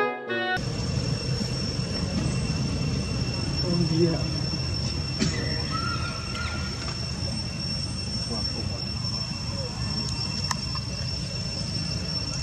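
Intro music cuts off within the first second, giving way to outdoor ambience: a steady high-pitched insect drone over a low rumble, with faint distant voices. A short thin call of about a second sounds around six seconds in.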